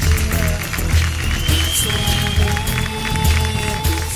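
Loud music with a heavy, steady beat.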